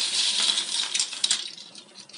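Rustling with light rattling and a few clicks from the packet of dry pasta shells just poured into the pot, dying away about one and a half seconds in.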